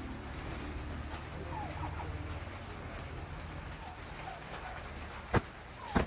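A hand swiping at a hanging cloth shirt to brush off cat hair, with two sharp slaps near the end. Underneath is a low steady hum with faint bird chirps.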